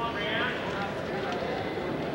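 Indistinct voices shouting and talking among the spectators and mat-side people at a wrestling match, over a steady background hiss.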